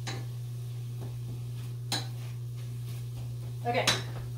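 Stirring a pot of spaghetti sauce on the stove with a utensil: two sharp clinks about two seconds apart with soft scraping between, over a steady low hum.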